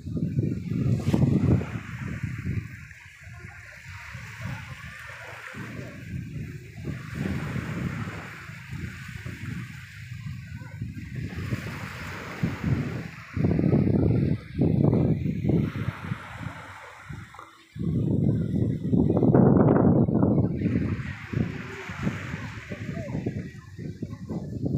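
Small sea waves washing onto a sandy shore among boulders, rising and falling, loudest for a few seconds near the end, with people's voices in the background.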